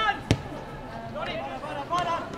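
A football kicked once: a single sharp thud about a third of a second in, with players' shouts on the pitch before and after it.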